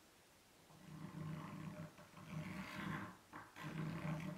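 Chalk scraping across a blackboard in several drawing strokes, starting about a second in and coming in three or four rough bursts.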